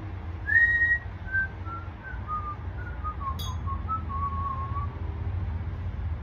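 A person whistling a short tune of about a dozen notes that step downward in pitch. The first note is the loudest and the tune ends on a longer held note.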